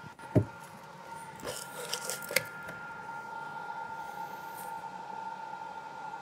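A few sharp knocks and bumps in the first two seconds or so, as someone climbs down a ladder through a hatch into a boat's engine room. Under them is a steady high-pitched hum from equipment running in the compartment.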